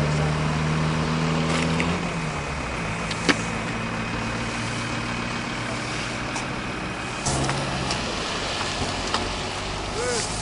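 Vehicle engine idling with a steady low hum, strongest in the first two seconds and briefly again past the seven-second mark. A single sharp click comes about three seconds in.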